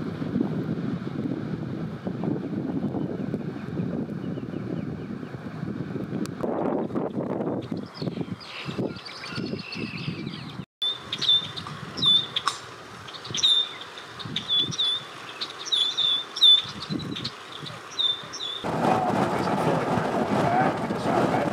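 Wind buffeting the microphone, then a bird repeating short, high chirps over lighter, gusting wind through the middle part. Heavy wind rumble returns near the end.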